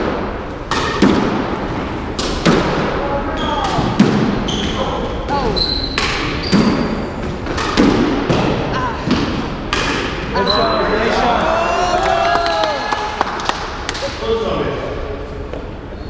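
Squash rally: the ball cracks off rackets and the court walls in an irregular run of sharp hits that echo in the enclosed court, with short high squeaks from the players' shoes on the hardwood floor.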